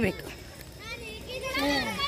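Women's voices in casual chatter with laughter, high-pitched and rising and falling, mostly in the second half.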